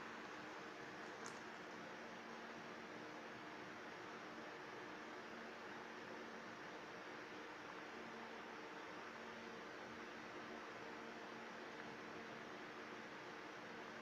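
Quiet room tone: a faint, steady hiss with a low hum under it, and one small tick about a second in.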